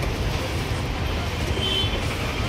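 Steady background noise: a low rumble with a hiss above it and no distinct event.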